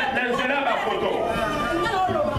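Speech only: several people talking at once over microphones.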